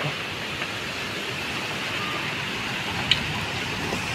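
Steady, even hiss of rain falling on trees and the ground, with one faint click about three seconds in.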